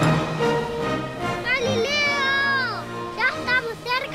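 Cartoon background music with a very high, squeaky voice over it. The voice gives one long cry that falls away at the end, then short choppy calls near the end.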